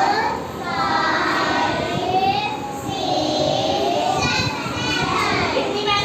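Continuous sing-song voices, a woman's and children's, chanting with long drawn-out notes that glide up and down.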